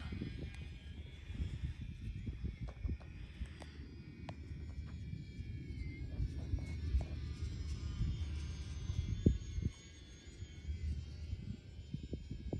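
Twin electric motors and propellers of a UMX Twin Otter model plane whining high overhead, the pitch slowly falling and then rising again as the plane passes, over a louder low rumble. A sharp click comes about nine seconds in.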